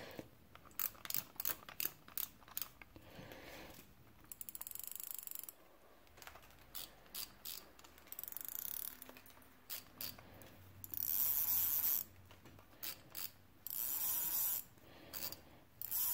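Zebco 733 Hawg spincast reel being worked by hand, its ratcheting mechanism clicking: scattered single clicks at first, then several runs of rapid clicking, each a second or two long, with pauses between.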